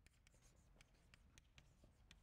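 Chalk on a blackboard while a word is written: a faint, quick, irregular run of small ticks and scrapes as the chalk strikes and drags across the board.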